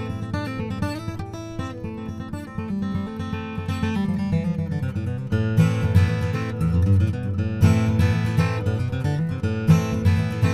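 Preston Thompson D-GA Vintage Custom steel-string dreadnought acoustic guitar, with an Adirondack spruce top and granadillo back and sides, played fingerstyle with a strong bass. About five seconds in the playing grows louder and fuller, into sounded chords.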